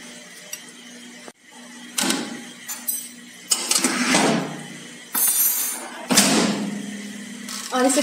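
Metal baking tray being handled on the wire rack of an electric oven (OTG), making scraping slides and sharp metal clinks. The clinks come about two seconds in, around four seconds in, just after five seconds and around six seconds, over a low steady hum.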